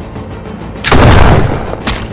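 A single loud rifle shot with a deep boom about a second in, fading over about half a second, then a short sharp click near the end, over steady background music.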